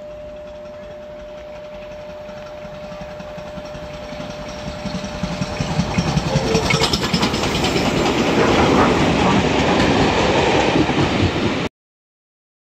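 Two LMS Black Five 4-6-0 steam locomotives double-heading a passenger train approach at speed, growing steadily louder over about eight seconds, then the coaches rush past close by with a loud rattling rumble. The sound cuts off suddenly near the end.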